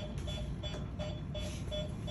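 Electronic patient monitor beeping steadily, about three short identical beeps a second, over a low hum.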